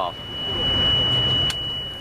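Laser-engagement hit sensor (MILES) on a soldier's harness sounding its shrill alarm, one steady high beep tone that signals the wearer has been hit by a laser-rigged weapon firing blanks. A low rumble runs underneath, and a sharp click comes about one and a half seconds in.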